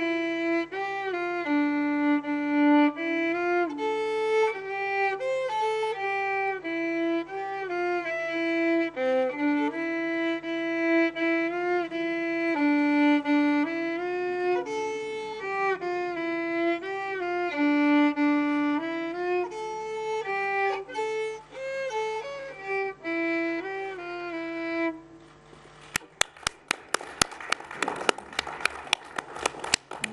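Solo violin played by a young girl: a slow melody of single notes with slides between some of them. It stops about 25 seconds in, and a short burst of hand-clapping applause follows.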